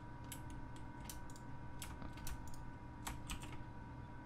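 Faint, irregular clicking of computer keyboard keys and a mouse, about a dozen separate clicks.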